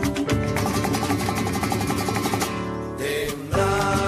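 Live song with strummed acoustic guitars and a man singing at a microphone, in a quick, steady strumming rhythm. About three and a half seconds in, the music changes to louder, sustained chords.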